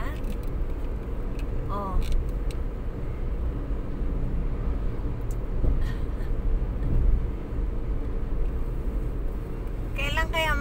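Road noise inside a moving car: a steady low rumble of engine and tyres while driving along a highway, with a brief faint voice about two seconds in.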